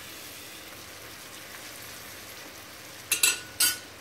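Bread frying in garlic butter in a nonstick pan, a steady, quiet sizzle. Near the end come two brief utensil clinks.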